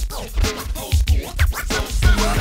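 Hip hop beat with a DJ scratching a record on a turntable: short swooping back-and-forth scratches over heavy kick-drum hits.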